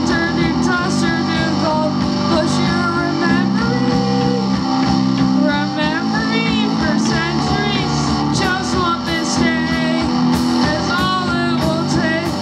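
Live rock band playing: electric guitars over a drum kit, the drums and guitars running steadily throughout.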